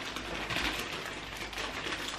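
Soft rustling and crinkling of candy wrappers and a drawstring goody bag as handfuls of wrapped candy are put into the bag.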